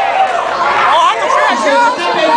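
Loud, overlapping voices: speech and crowd chatter.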